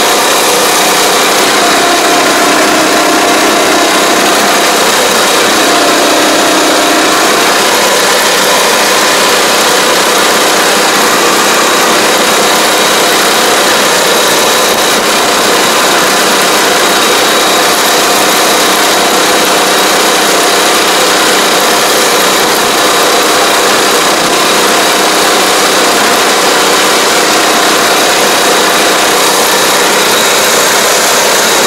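The small engine of an AP1 riding pesticide sprayer running steadily while the machine drives along crop rows spraying, heard close up from the operator's seat.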